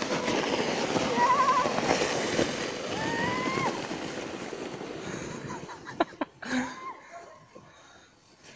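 A plastic snow shovel scraping and hissing over snow as a woman slides downhill sitting on it; the sound fades as she moves away. Two high, wavering squeals come over it, about a second in and about three seconds in.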